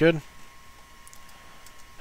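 Faint clicking of a computer mouse scroll wheel and keyboard keys, after a single spoken word, over a thin steady tone.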